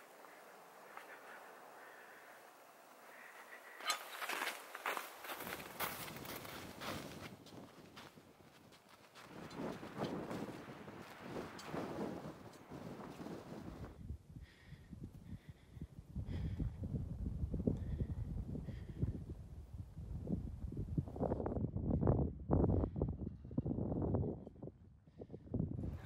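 Footsteps crunching in snow, uneven steps starting about four seconds in, with wind rumbling on the microphone over the second half.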